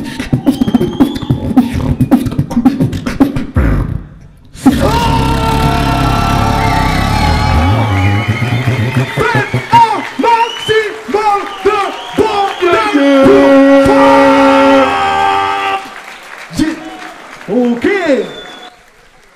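Solo beatboxing into a microphone: fast vocal kick-and-snare clicks over bass, breaking off about four seconds in. Then sustained vocal bass with bending, pitched melodic lines and long held tones, stopping about two seconds before the end.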